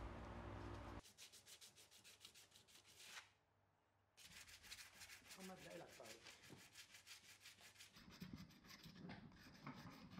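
Hand-sanding a glass sculpture with sandpaper: quick, rhythmic scratchy strokes with a brief pause partway through. In the first second a steady low hum is heard, which stops abruptly.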